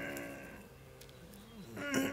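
A man's drawn-out vocal sound, made with his tongue pulled out between his fingers, held on one steady pitch and fading away within the first second, followed by a short quiet pause.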